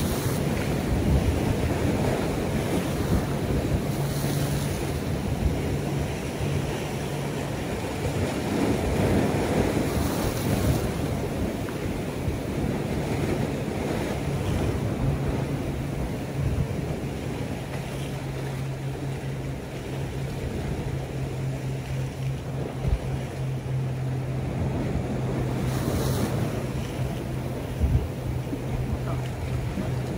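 Sea waves washing against a rocky shore, with wind buffeting the microphone and a steady low hum underneath.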